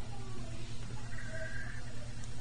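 Steady low electrical hum with hiss on an old sermon recording, during a pause in the preaching. About halfway through, a faint thin high tone sounds for under a second.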